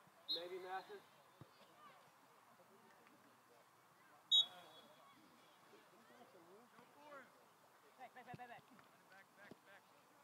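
Distant shouting voices of players across an open soccer field. About four seconds in comes a short, high referee's whistle blast, the loudest sound, with a fainter blast right at the start.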